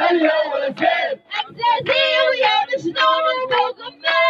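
A woman's voice chanting a rhythmic Arabic protest slogan through a megaphone, in short repeated sung phrases with brief breaks between them.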